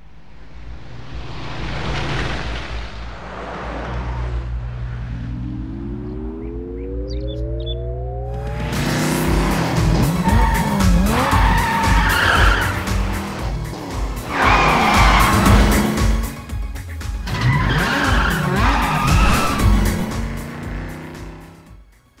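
Film soundtrack with car sound effects. A swelling whoosh over low held notes and a rising glide lead into an upbeat music track with a steady beat about nine seconds in. Under the music a sports car's engine revs and its tyres squeal as it speeds and skids.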